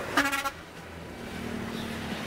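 A vehicle horn gives one short toot just after the start and cuts off suddenly, leaving quieter road noise with a faint steady low hum.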